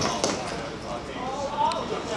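A football kicked hard at goal: a sharp thud right at the start, then a second knock about a quarter second later. Voices of players and spectators go on under it.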